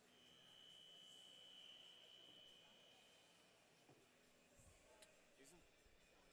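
Near silence: faint arena room tone, with a faint steady high tone lasting about three seconds at the start and a few faint ticks near the end.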